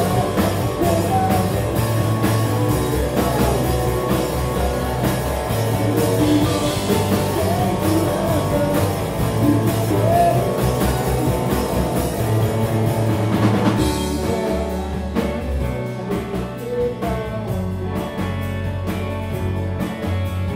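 Live rock band playing a song: two electric guitars, electric bass and a drum kit, with a lead vocal sung over them. The arrangement changes about fourteen seconds in.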